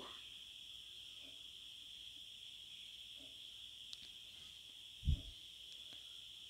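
Faint, steady high-pitched trill of crickets in the background, with a single short low thump about five seconds in.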